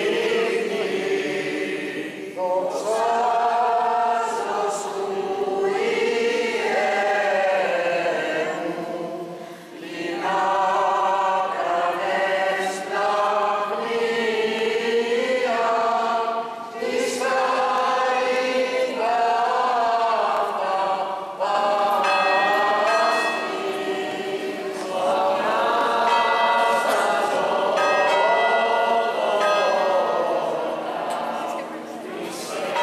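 A choir singing Greek Orthodox Byzantine chant in long, separate phrases. A church bell rings over the singing in the last several seconds.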